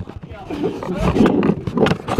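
Hands grabbing and fumbling an action camera, rubbing and knocking right on its microphone, with voices mixed in.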